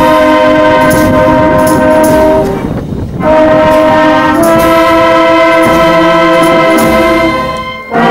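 Wind band of trumpets, saxophones, clarinets, tuba and snare drums playing slow, long held chords, with light drum strokes over them. The phrases break briefly about three seconds in and again near the end.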